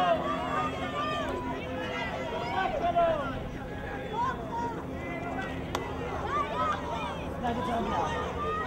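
Indistinct voices of spectators and players calling out across an outdoor rugby pitch, with a steady low hum underneath and one sharp click just before six seconds in.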